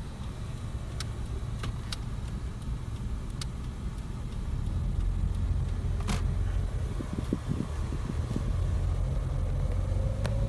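Cabin noise of a Toyota sedan being driven: a steady low engine and road rumble that grows louder about halfway through as the car gathers speed, with a few sharp clicks in the cabin.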